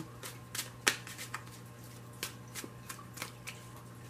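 A deck of tarot cards being shuffled by hand: irregular light flicks and snaps, the sharpest about a second in.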